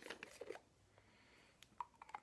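Near silence, with a few faint clicks of a plastic bottle cap being handled in the first half second.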